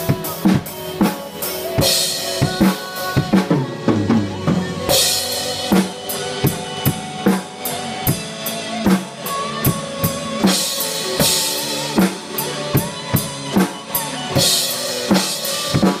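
Acoustic drum kit played live along to a recorded ballad backing track: a steady kick-and-snare beat with cymbal crashes every few seconds, over the sustained instruments of the song.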